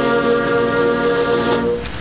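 Band music led by brass, holding a long sustained chord that stops shortly before the end, leaving only a steady hiss.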